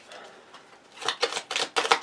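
A tarot deck being shuffled in the hands: a quick run of crisp card clicks, about eight a second, starting about halfway through.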